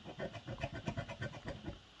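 A coin scraping the latex coating off a scratch-off lottery ticket in rapid short back-and-forth strokes, several a second, stopping just before the end.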